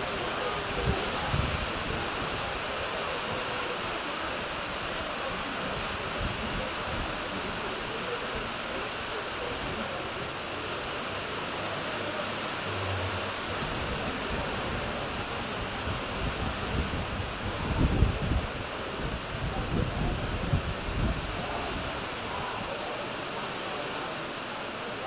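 Steady outdoor hiss from a stadium with no crowd, with faint distant voices, and a few irregular low rumbles of wind buffeting the microphone about three quarters of the way in.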